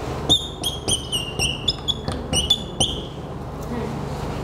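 Dry-erase marker squeaking on a whiteboard as words are written: a run of about ten short, high squeaks, one per stroke, lasting about two and a half seconds before they stop.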